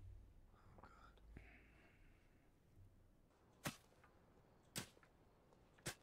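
Near silence, broken in the second half by three sharp strikes about a second apart: a shovel digging into the ground.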